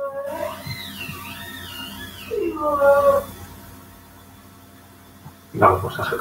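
An animal's pitched calls: a wavering high call, then a louder call that falls in pitch about two and a half seconds in.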